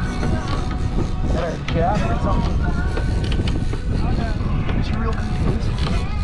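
Steady low rumble of wind and boat noise on the microphone at sea, with brief indistinct voices a couple of seconds in.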